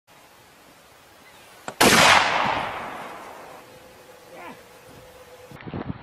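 A single loud rifle shot about two seconds in, preceded by a faint click, its report dying away over about a second and a half.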